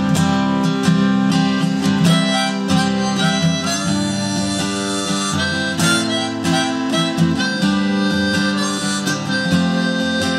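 Harmonica played from a neck rack over a strummed steel-string acoustic guitar, an instrumental break in a folk song.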